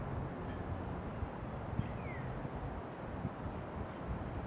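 Steady low outdoor background rumble with a faint, short, falling bird chirp about two seconds in.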